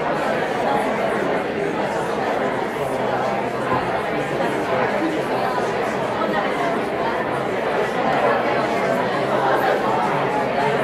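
Audience members talking at once in small-group conversations: a steady hubbub of many overlapping voices, with no single speaker standing out.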